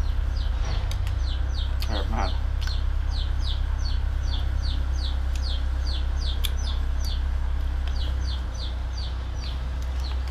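Chicks peeping: a long run of short, high, falling peeps, about three or four a second, fading out near the end, over a steady low hum.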